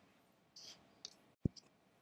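Faint handling sounds: a brief rustle, then a few small clicks, the loudest and sharpest about one and a half seconds in. They come from the equipment being handled as the monitor is switched over from one computer to another.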